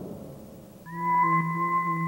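Electronic soundtrack of an abstract computer animation: a ringing gong-like tone dies away, then just under a second in a steady synthesized drone of several pure tones begins with a short upward glide, its middle tone pulsing gently.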